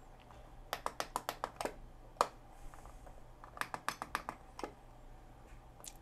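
Plastic push-buttons on a cheap LED alarm clock clicking as the alarm time is set: two quick runs of clicks, about a second in and about four seconds in, with single clicks between.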